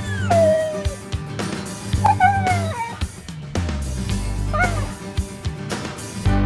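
Brittany spaniel giving three short whining cries, each falling in pitch: one near the start, one about two seconds in, and a brief one about four and a half seconds in. Music plays underneath.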